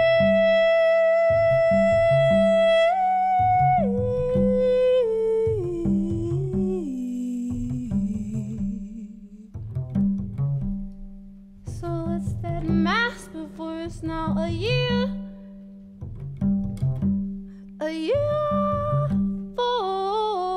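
A woman sings over her own plucked upright double bass: she holds one long note, then steps down in pitch note by note. After a stretch of plucked bass alone she sings rising, wavering phrases, and she holds another note near the end.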